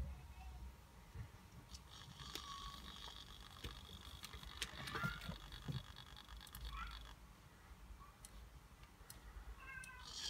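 Faint high whine from a hobby servo in an InMoov robot arm, powered up and driven. It starts about two seconds in and cuts off about five seconds later, with a few short rising pitch glides and scattered light clicks.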